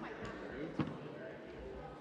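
Indistinct murmur of people talking, with a single sharp thump a little under a second in.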